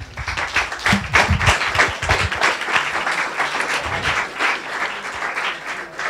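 Audience applauding, a dense patter of hand claps that eases a little near the end.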